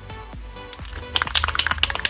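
Aerosol spray-paint can being shaken, its mixing ball rattling in rapid clicks from about a second in, over background music.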